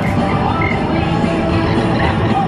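Background music playing at a steady level.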